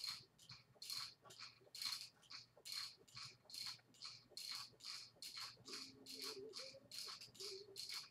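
Gazelle glider in use: a faint, quick rhythmic swishing from the swinging leg arms and pivots, about three strokes a second.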